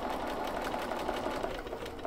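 Bernina domestic sewing machine running steadily at an even speed, stitching a seam through layers of cotton fabric.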